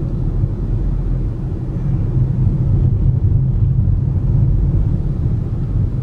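Steady low rumble of a car driving along a residential street, its engine and tyre noise heard from inside the cabin.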